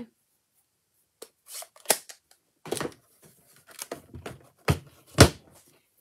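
Plastic clacks and knocks of a manual die-cutting machine's fold-out side platforms being opened and set down: a handful of separate sharp knocks, the loudest near the end.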